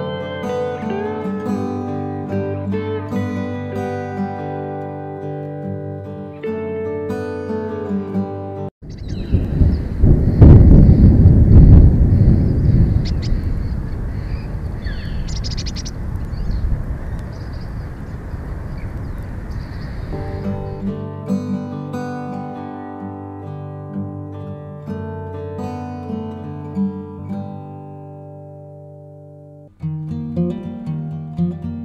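Plucked acoustic guitar music, cut off about nine seconds in by a loud low rumbling noise that swells quickly and fades slowly over about ten seconds; the guitar music then returns.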